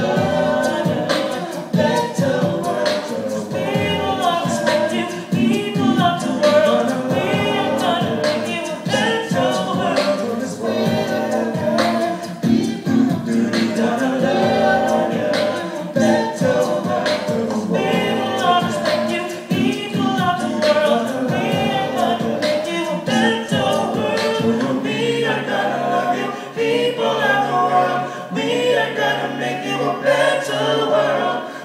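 A cappella vocal group singing in harmony through microphones and a stage sound system, over a regular percussive beat. About five seconds before the end a low bass note comes in and is held.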